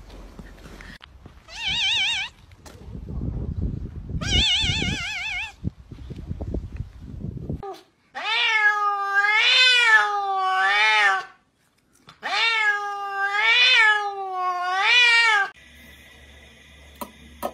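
A cat meowing over and over: two runs of three meows, each call rising and falling in pitch, in the second half. Before them come two short, wavering high-pitched tones over some soft low rustling.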